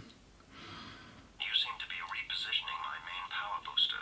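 Playmobil KITT toy car's built-in speaker playing a recorded phrase in English in KITT's voice, thin and tinny. A short faint hiss comes first, and the voice starts about a second and a half in.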